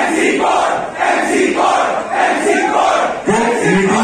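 Concert crowd shouting together in short, repeated rhythmic bursts while the beat's bass has dropped out. Near the end a man's amplified voice comes in over the PA.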